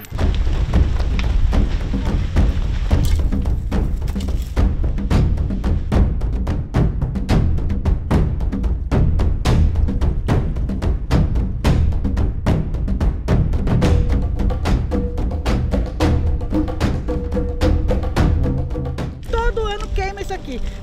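Background music with a heavy low drum bed and a steady run of sharp percussive hits; a held tone joins in over the last few seconds.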